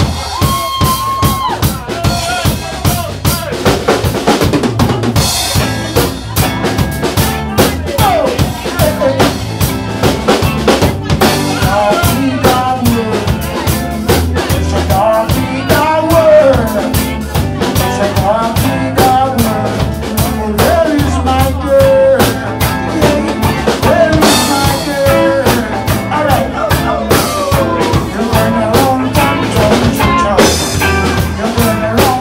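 Live roots reggae band playing: drum kit keeping a steady beat, with bass guitar and electric guitars, amplified through the room's speakers.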